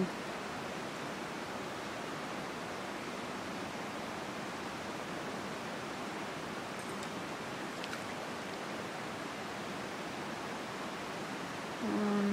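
Steady rush of flowing river water, an even hiss that does not change.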